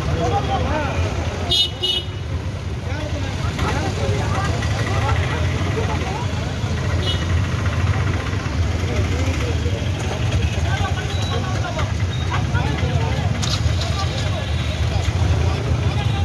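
Street crowd of many people talking over one another, over a steady low rumble of motorbike and scooter engines. A two-wheeler's horn gives a short toot near two seconds in, and a fainter one around seven seconds.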